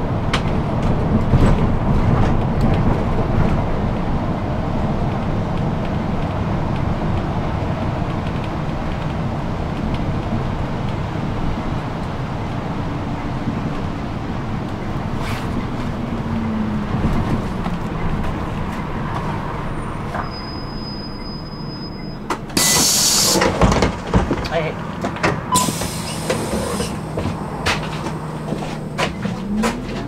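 Inside a city bus at highway speed: a steady run of diesel engine and tyre noise. The engine note falls about halfway through and climbs again near the end. About three-quarters of the way in comes a brief loud hiss, with a thin high whistle just before it.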